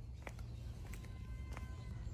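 Faint, far-off screeches of a pet bird answering its owner's call, two short cries about a quarter second and a second and a half in.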